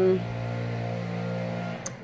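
A steady low hum made of several held tones, which stops shortly before the end with a brief click.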